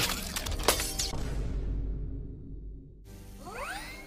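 Film sound effects: a loud crash with shattering glass right at the start, its debris fading over about two seconds, then rising whines near the end as an Iron Man suit's repulsors power up, over low music.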